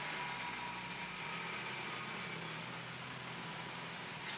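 Steady city street background noise: a constant low hum and hiss of traffic, with no distinct events.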